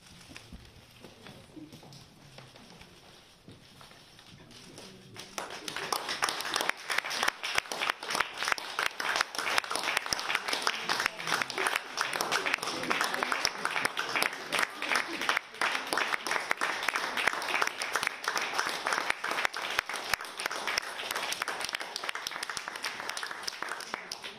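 An audience applauding: the clapping breaks out about five seconds in and keeps going at an even strength; before it, only faint murmur in the room.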